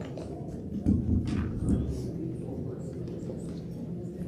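Microphone handling noise: a few dull bumps and small knocks about a second in, then a steady low room sound.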